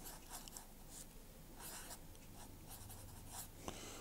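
Felt-tip marker (BIC Marking Pocket) drawing on paper: a few short, faint strokes as small marks are put down.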